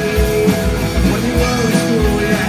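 Live rock band playing: electric guitars, electric bass and drum kit with a steady driving beat, amplified through the stage speakers.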